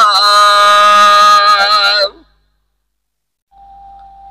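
Gurbani kirtan: a voice holds a long, wavering sung note over harmonium. About two seconds in, it breaks off abruptly into silence. A faint single steady tone enters near the end.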